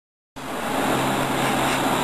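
Borosilicate glassworking torch burning with a steady hiss and a faint low hum beneath it, starting abruptly about a third of a second in.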